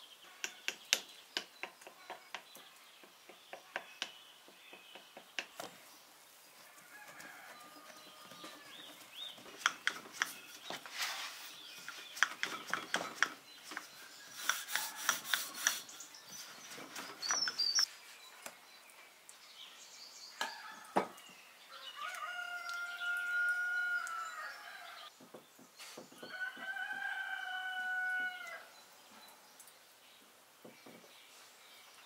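A rooster crowing twice in the second half, each crow one long call of two to three seconds. Before that, a run of light clicks and taps from kitchen work with glass dishes and a rolling pin.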